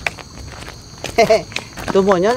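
Footsteps scuffing on a gravel track, with a short vocal exclamation about a second in and a longer wavering vocal cry starting near the end.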